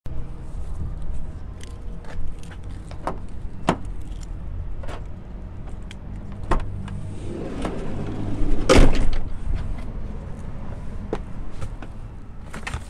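Low rumble of motor vehicles with scattered sharp clicks and knocks, swelling to a louder rush with a sharp knock about eight to nine seconds in.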